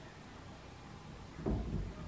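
Quiet shop room tone, then about a second and a half in a dull thump as a 17-inch wheel and tyre are pushed onto the hub and meet the brake caliper: the wheel does not clear it.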